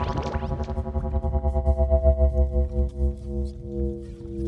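Experimental electronic music: a held synthesizer chord over a fast-pulsing deep bass, the bass falling away about three seconds in, with sparse high clicks.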